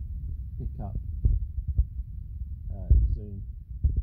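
A steady low rumble with a few soft low thumps, under brief stretches of a muffled voice.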